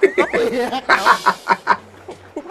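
A man laughing hard in a rapid run of short bursts that trails off near the end.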